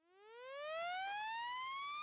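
Synthesized rising tone, a logo-intro riser sound effect: it fades in from silence and glides steadily upward in pitch.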